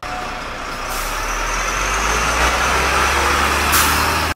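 A bus's engine running, its rumble swelling over the first second and then holding steady, with a short hiss near the end.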